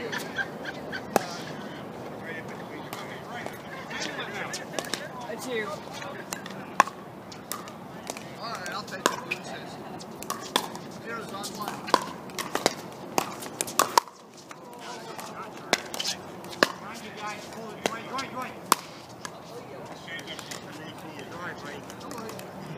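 Pickleball paddles hitting hard plastic balls: sharp pops at irregular intervals from the rallies, over a background of voices.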